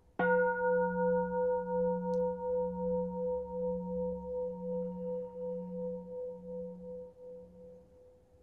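A singing bowl struck once, ringing with a low hum and higher overtones that pulse about twice a second as they slowly fade; a meditation bell marking the return to sitting.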